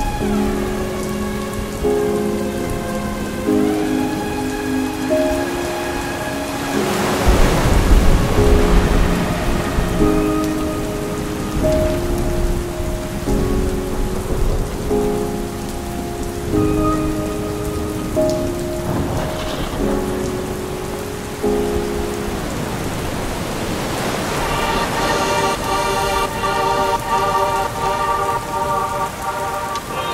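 Slow synth music, sustained notes and chords changing every second or so, over a steady rain sound. A rumble of thunder about seven seconds in is the loudest moment.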